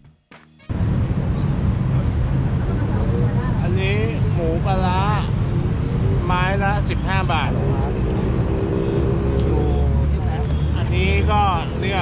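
Roadside street noise: a loud, continuous low rumble of traffic, with voices talking over it at intervals. Faint background music cuts off under a second in.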